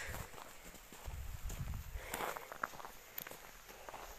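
Faint, irregular footsteps on a snow-covered path.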